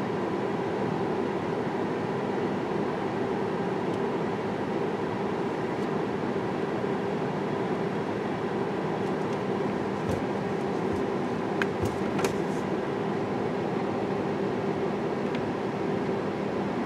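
Steady hum inside a car's cabin with the car running, with a few light clicks between about ten and twelve seconds in.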